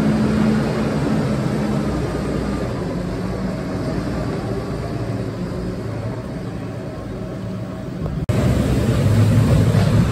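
A JCB Fastrak tractor's engine runs steadily while its trailer is raised to tip. About eight seconds in, the sound switches abruptly to a louder, deeper engine: a JCB TM310S pivot-steer loader.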